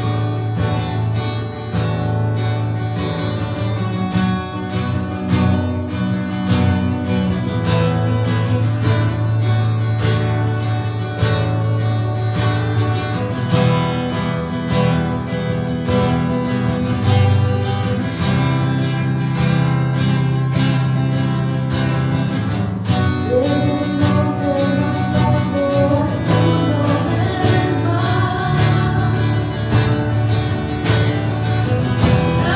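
Live worship band playing a song on drums, electric guitar and acoustic guitar with a steady beat. A woman's singing voice joins in the last few seconds.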